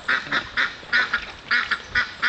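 Hen call duck quacking in a quick string of short, high-pitched calls, about four a second. Her voice is still strange from injuries to the nose and mouth in a hawk attack.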